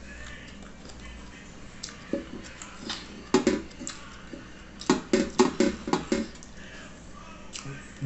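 Close-up mouth sounds of a man eating gelatinous cow's foot (mocotó) by hand: wet chewing and lip smacks, a few about two to three seconds in and a quick run of about six near five to six seconds.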